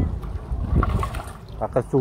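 Water sloshing around the legs of someone wading through knee-deep pond water, over a low rumble; a man speaks briefly near the end.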